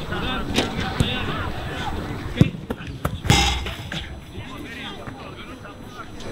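Footballs being kicked on a grass pitch: several sharp thuds of boot on ball, the loudest about three seconds in, with players' voices calling in the first couple of seconds.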